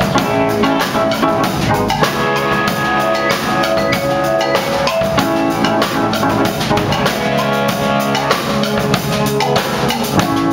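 Small rock band playing an instrumental passage live: drum kit keeping a steady beat under electric guitars and keyboard.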